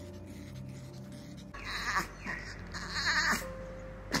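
Background music with a steady held note; from about a second and a half in, a long-haired chihuahua gives a few short, bleat-like whining calls, the loudest near the end.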